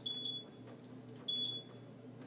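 AP snack machine's keypad beeping twice, about a second apart, as selection buttons are pressed in price-check mode; each beep is short and high, with a steady low hum underneath.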